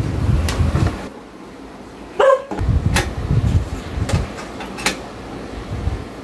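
Clicks and knocks as a rice cooker is handled, plugged into the mains and set down for testing. A short, rising squeal comes a little after two seconds in.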